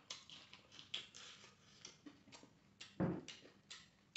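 Close-miked mouth sounds of a man chewing rice and fried fish: wet clicks and lip smacks, about two to three a second. A single louder, low thump comes about three seconds in.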